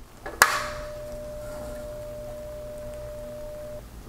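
A sharp click, then a single steady electronic tone held for about three seconds before it cuts off, over a faint low hum.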